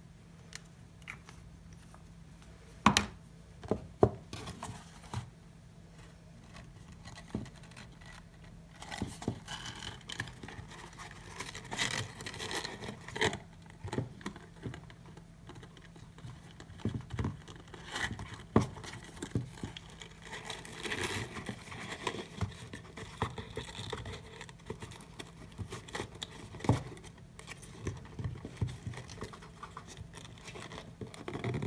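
Cardstock gift box being handled and set down on a work surface: scattered light taps, scrapes and paper rustles, with a few sharper knocks about three and four seconds in and again later.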